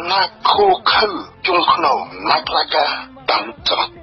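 Speech only: a man talking steadily in Khmer commentary.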